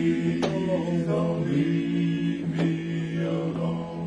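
Male gospel quartet singing a cappella, holding sustained wordless chords in close harmony. The low voice stays steady while the upper parts step to new notes.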